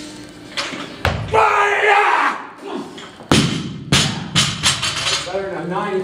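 Loaded barbell with bumper plates dropped onto a wooden lifting platform: one heavy impact, then the bar bouncing four or five times, the bounces coming quicker and fading. An earlier thud comes about a second in.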